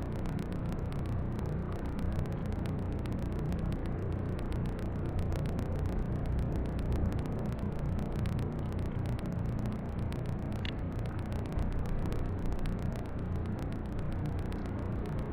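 Steady rain ambience: a low, even rumble of rainfall with many fine ticks of drops striking water.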